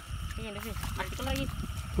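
Short, quieter snatches of people talking, over a low rumbling background.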